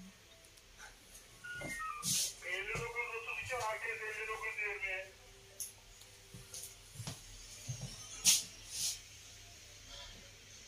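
A high-pitched voice for about three seconds in the first half, not clear enough to be transcribed, then a few scattered knocks and clicks in the second half, the loudest a little past the middle.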